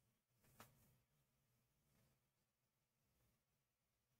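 Near silence: faint room tone, with one brief faint click about half a second in.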